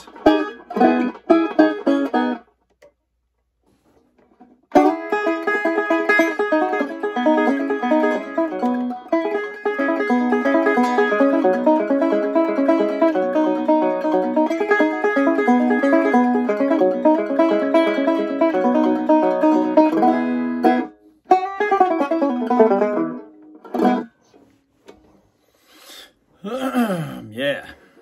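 Banjo picked in fast runs of notes. A short phrase opens, then a silence of about two seconds, then about sixteen seconds of unbroken picking, followed by a few shorter phrases that die away near the end.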